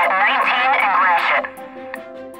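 A loud voice over steady background music; the voice stops about two-thirds of the way through, leaving the music playing on its own.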